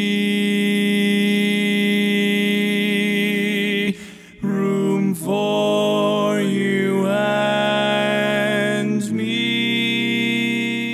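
A cappella four-voice barbershop harmony singing a tag: a held, ringing chord cuts off about four seconds in, then the next rendition starts with moving chords and settles on another long held chord. In this rendition the lead stays at tempered pitch while the other three voices tune around it in just intonation, so the lead note sounds flat without the chord going out of key.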